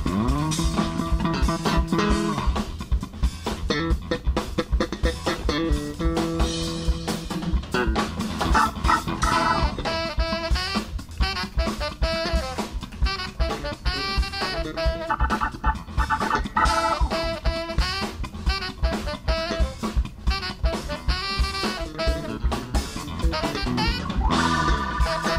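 Live funk band playing: electric bass guitars and a drum kit keep a steady beat under guitar, and a saxophone melody comes in about nine seconds in.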